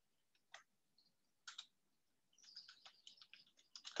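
Faint computer keyboard keystrokes: two single key clicks in the first two seconds, then a quick run of taps near the end.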